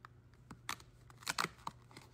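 A fingernail prying open a perforated cardboard advent-calendar door: a string of short, sharp snaps and clicks as the card tears free, loudest about two-thirds of a second in and again around a second and a half.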